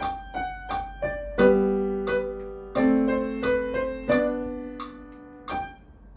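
Acoustic upright piano played in a scherzando at tempo 88: short, separately struck notes over lower chords that land about every second and a half, each note ringing out and fading.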